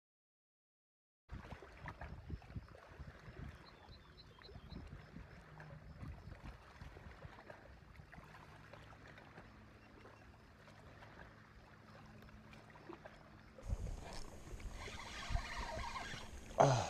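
A second of silence, then faint lakeshore ambience: small ticks and light water sounds over a low steady hum. It gets louder near the end as a spinning reel is handled.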